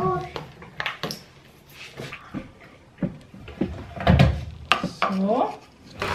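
Irregular plastic knocks and clatters from a front-loading washing machine being handled, its detergent drawer and door moved, with a heavier thump about four seconds in.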